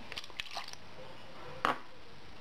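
Red wine vinegar poured from a drinking glass into a plastic bowl, with a few faint splashes, then one sharp knock a little past the middle as the glass is set down on the table.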